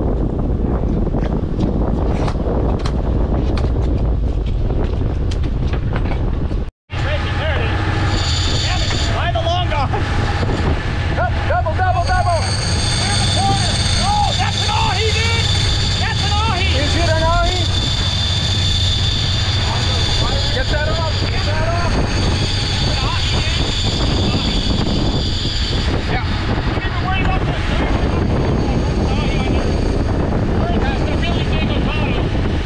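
Boat engine running under way, with steady wind and water rush. After a cut about seven seconds in, a marine radio's squelch and chatter sound over it, with several high steady tones.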